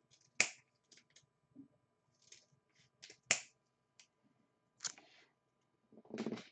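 Trading cards and plastic card holders being handled on a table: two sharp clicks about three seconds apart, with lighter ticks between and a brief rustle near the end.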